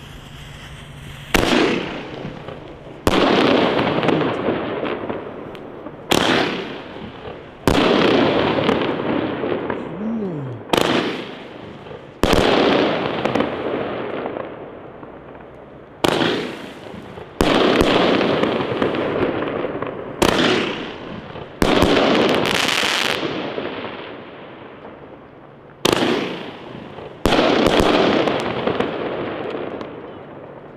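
A consumer fireworks fan battery (Rocket Fire Exklusiv) firing shot after shot. About a dozen sharp bangs, often in pairs about a second apart with gaps of two to three seconds between pairs. Each bang is followed by a crackling rush that dies away over a second or two.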